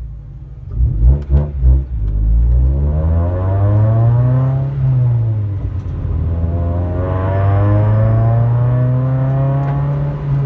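Honda EG Civic's four-cylinder engine, heard from inside the cabin, accelerating away from a stop. After a few low thumps about a second in, the engine note climbs through first gear, drops at a gear change about five seconds in, then climbs again more slowly through the next gear.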